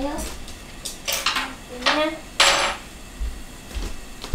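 Plates and bowls being set down on a wooden table, clinking: a few separate clacks with a short ring, the loudest about two and a half seconds in.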